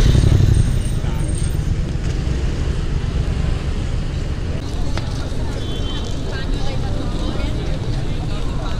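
Street traffic at a busy crossing: cars pass close by with a steady low rumble, while people around them talk.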